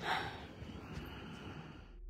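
A short breath into a phone's microphone, then faint outdoor background noise dying away.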